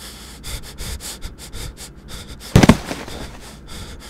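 A man's rapid, short breaths, several a second, then a loud heavy thump about two and a half seconds in, a body falling onto the floor, followed by a couple more breaths.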